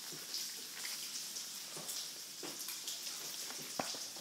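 Steady faint hiss with a few soft handling knocks as a spiral sketchbook is held up and moved, and one sharp click near the end as it is set back down on the stone tabletop.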